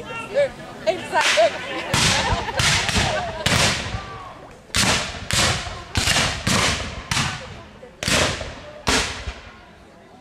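Black-powder muzzle-loading muskets firing blanks in a ragged series of about a dozen shots spread over several seconds. Each shot is a sharp crack with a long echoing tail.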